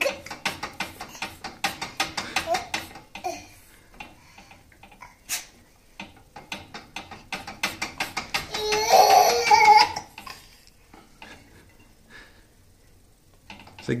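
A Regalo metal baby gate rattling in quick clatters, about six knocks a second, as a baby shakes it by the bars, in two bouts. Near the middle the baby's voice comes in for about a second and a half.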